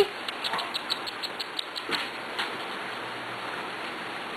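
Corgi puppies scuffling and tussling on a fleece blanket: a quick run of small faint clicks and scratches for about two seconds, then only a few more.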